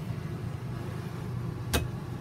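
Steady low hum of an RV air conditioner, with a single sharp click near the end as a cabinet door's catch is pulled open.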